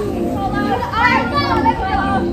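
Children's voices calling and chattering at play, high-pitched and overlapping.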